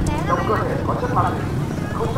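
Busy street-market hubbub: several people talking in the background over the low, steady rumble of motorbike engines.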